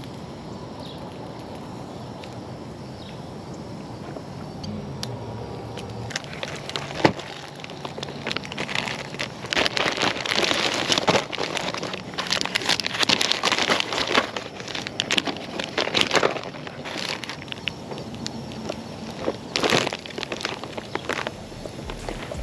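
Crinkling and rustling of plastic lure packaging and fishing gear being handled, with scattered sharp clicks and knocks. It starts after a few seconds of steady background noise and is busiest about halfway through.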